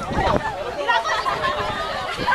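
Voices of several people talking at once: crowd chatter.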